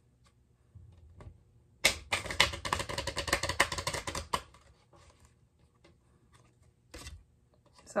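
A deck of Kipper fortune-telling cards being shuffled by hand: a fast run of card clicks lasting about two and a half seconds, starting about two seconds in, then a single card snap near the end.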